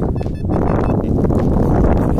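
Wind buffeting the microphone: a steady low rumble that sets in about half a second in.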